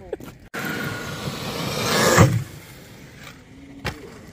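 RC monster truck running across gravel, its noise building to a loud thump about two seconds in.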